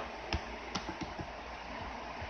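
A handful of light, sharp clicks at a computer, scattered over the first second and a half, above a steady background hiss.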